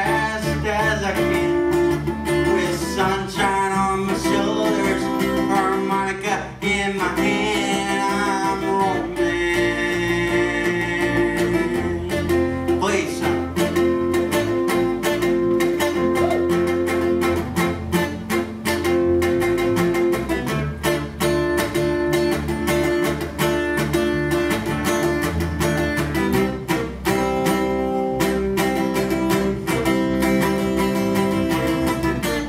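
Live band music: acoustic guitar strumming over an electric bass line, with a voice singing in the first several seconds.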